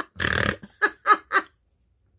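A woman's acted cartoon laugh: quick, even "ha-ha-ha" pulses, broken a fraction of a second in by one rough snort, then three more short ha's that stop about a second and a half in.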